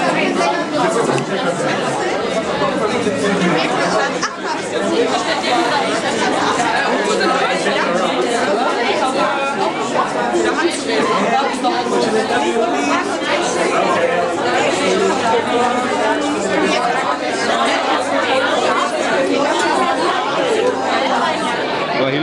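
Crowd chatter: many people talking at once, a dense steady babble with no single voice standing out.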